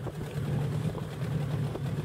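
Motorboat engine running steadily with a low hum, over wind and water noise.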